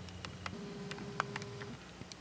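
Camcorder zoom motor whirring steadily for about a second while the lens zooms out, with faint scattered clicks.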